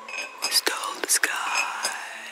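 Whispered, breathy vocal sounds with a few sharp clicks and gliding tones at the close of a song, after a held, wavering sung note has stopped.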